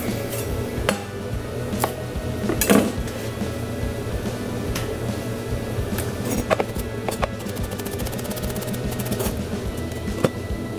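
Background music over a few knocks on a bamboo cutting board, then a quick run of chef's knife chops through green onions, knife striking the board, in the last few seconds.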